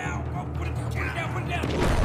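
Men's voices straining and grunting as they push a heavy boulder, over a steady background music bed. A loud noisy burst comes near the end.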